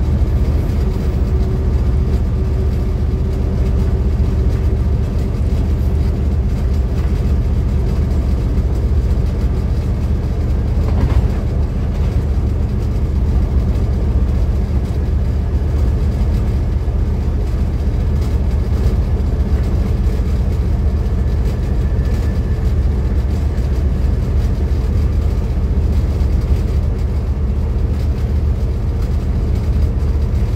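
Steady low rumble of a V/Line N class diesel locomotive running at speed along the track, its engine drone mixed with the sound of wheels on the rails.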